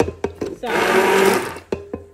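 Hand-held immersion blender grinding cooked spinach in an aluminium pot in short bursts: a few brief pulses, then the motor runs for about a second and stops. The spinach is only being ground coarsely, not to a paste.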